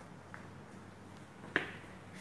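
Quiet room tone with a single sharp click about one and a half seconds in.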